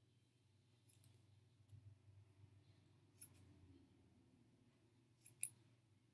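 Scissors snipping through the curly hair of a lace front wig: a few faint, short, sharp cuts spread out, the loudest about three seconds in and near the end.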